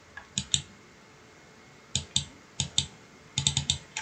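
Computer mouse clicks in quick pairs, three pairs spread through the first three seconds, then a fast run of about five clicks near the end.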